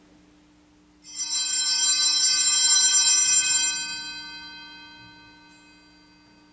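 Altar (sanctus) bells rung at the elevation of the chalice during the consecration. A bright, many-toned jingling starts suddenly about a second in, is shaken steadily for about two and a half seconds, then rings away over the last two seconds.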